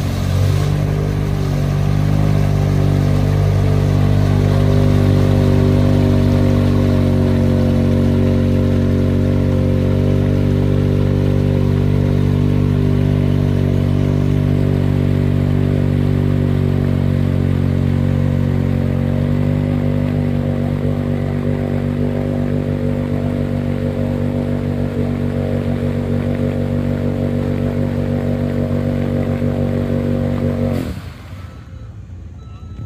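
Side-by-side UTV engine running loud and steady at nearly constant revs, its tires spinning and throwing mud while the machine sits stuck in the mud pit.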